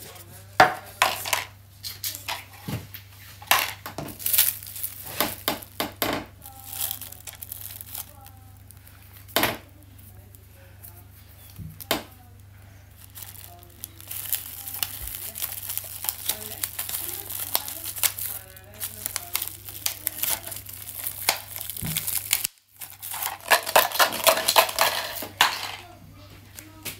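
Plastic and paper cups clicking and knocking as they are handled and set down on a table. Later comes the crackling of plastic cling film being stretched over a cup's mouth and held with a rubber band, forming a drumhead.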